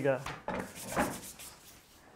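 Crust of a freshly baked, still-hot loaf scraping and rustling as it is set down and handled on a cloth on the counter, with two short scrapes about half a second and a second in.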